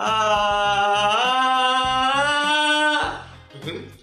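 A man sings one long sustained "ah" vowel for about three seconds, the tone lifting slightly about a second in before it stops. It is a demonstration of singing from the throat: a tensed, constricted note rather than one pushed from the diaphragm.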